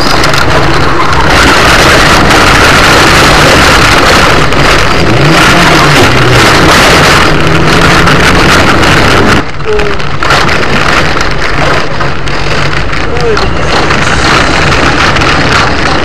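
A car's engine running hard, with heavy road and wind noise, heard loud from inside the car, its pitch rising and falling now and then. About nine seconds in the sound cuts abruptly to a different recording of similar driving noise.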